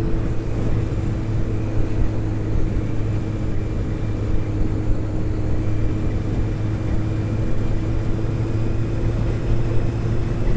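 Honda CBR600's inline-four engine running at steady cruising revs, its pitch unchanged throughout, under a constant rush of wind on the helmet-mounted microphone.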